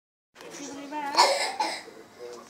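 A person's short wordless voice, then a cough about a second in, followed by a smaller second cough.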